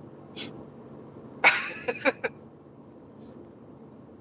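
A man's short burst of laughter, one loud outburst about a second and a half in followed by two quick pulses, inside a moving car over steady road noise.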